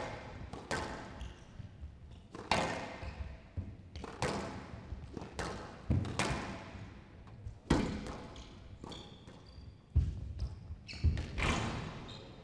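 A squash rally on a glass court: the ball is struck by rackets and rebounds off the walls in sharp, echoing hits about every one to two seconds. The hits come in quick pairs near the end.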